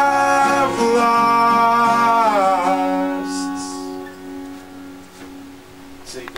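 Acoustic guitar and male voice closing a song: a long held sung note that slides down and stops about two and a half seconds in, then the last strummed chord ringing on and fading away.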